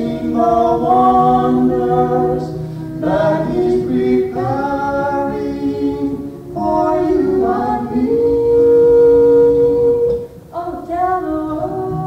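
Voices singing unaccompanied, with sustained notes in phrases of a few seconds and short breaks between them.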